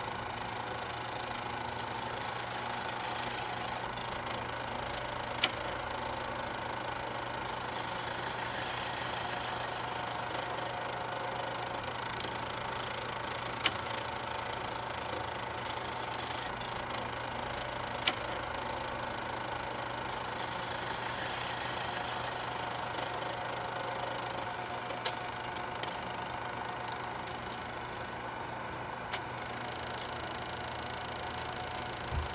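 A steady mechanical hum with a hiss, broken by a handful of sharp clicks several seconds apart.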